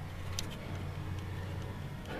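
A steady low background hum, with one faint tick about half a second in.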